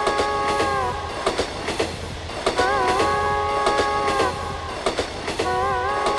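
Train horn sound effect blown three times, each blast a chord of several tones with a slight wobble at its start, over a regular low clattering beat like rail wheels. It is a train effect set within a folk song about a train.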